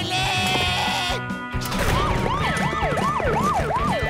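Cartoon soundtrack music, then from about two seconds in a fast wailing siren whose pitch rises and falls about three times a second over the music.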